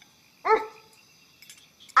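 A short, pitched 'uh' grunt of disgust, about half a second in, from a woman who has just tasted food gone sour and stale.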